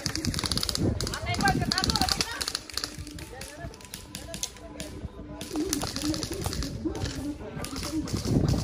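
Airsoft guns firing in short bursts of rapid clicking, one at the start and another about a second in, with players' voices calling out across the field.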